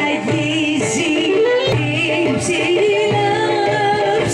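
Live Greek traditional folk music for the dance: a singer over melody instruments, playing steadily with ornamented, wavering melody lines.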